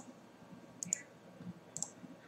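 A few faint clicks of a computer keyboard and mouse, spaced about a second apart.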